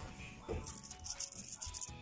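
Loose coins jingling and clinking together in a dense rattle lasting about a second, over background music.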